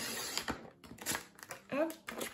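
Sliding paper trimmer blade drawn across a sheet of scrapbooking paper: a short scrape of cutting about half a second long, then a few light clicks.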